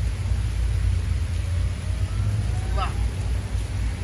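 Steady rushing of water cascading over a stone fountain wall, heard as a constant deep rumble with a hiss above it.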